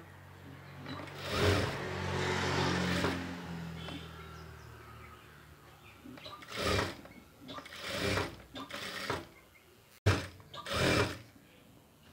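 Sewing machine stitching a seam through cloth, running steadily for about three seconds from about a second in, then stopping. Later come several short rustles as the fabric is handled and repositioned.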